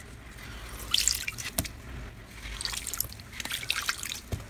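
Water-soaked, glitter-coated floral foam being squeezed and crushed by hand, crackling in short clusters while water drips and trickles out into a glass bowl.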